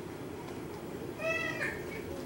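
A single brief high-pitched cry, about half a second long, a little over a second in, much quieter than the preaching around it.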